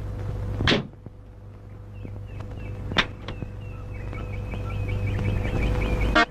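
Low car-engine rumble broken by a sharp thump about 0.7 seconds in, after which the rumble drops away and then swells slowly again. There is a single sharp knock near the middle, and from about two seconds in, quick high chirps repeat several times a second.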